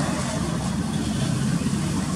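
Road traffic: a vehicle driving past with its engine running, giving a steady noise with a low hum.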